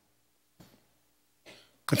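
A man coughing quietly into his fist: two short, faint coughs about a second apart.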